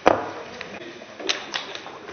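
One sharp click picked up close to a desk microphone, then a few fainter clicks and taps about a second later, over low room tone.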